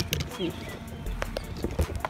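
Quiet outdoor ambience: wind rumbling on the microphone, faint bird calls and a few light clicks, with one short spoken word.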